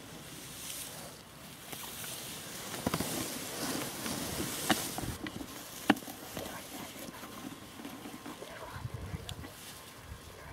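Close rustling of grass and brush, swelling in the middle, with a few sharp clicks, the loudest about halfway through and a second later.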